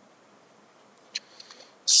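A single short click about a second in, followed by a few faint ticks, from a computer mouse clicking and its scroll wheel turning, over quiet room tone.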